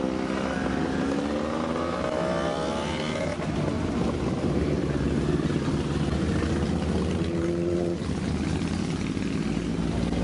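Several motorcycles ride slowly past one after another, their engines running at low revs and overlapping. The pitch rises as riders open the throttle about two seconds in and again near eight seconds.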